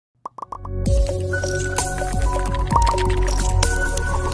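Intro music: a few short quick notes, then a steady beat with held tones and percussion from about a second in.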